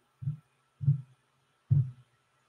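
Three short, dull low thumps, the first softer and the next two louder, spread over about a second and a half.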